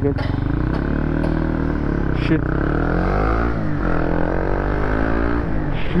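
Honda CB150R single-cylinder motorcycle engine accelerating through the gears, its pitch climbing and dropping back at each upshift about three times, over wind rush on the rider's camera.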